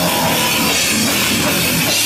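Death metal band playing live: distorted guitars and a drum kit, loud and unbroken.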